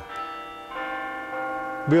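Bells ringing, several tones sounding together and held; a new stroke joins about three-quarters of a second in.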